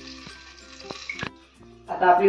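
Stuffed brinjals frying in oil, without water, in a covered aluminium kadhai: a soft sizzle with a few sharp crackles that stops about two-thirds of the way through.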